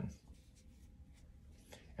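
Faint scratchy rubbing of cotton yarn drawn over a metal crochet hook as a stitch is worked, over quiet room tone.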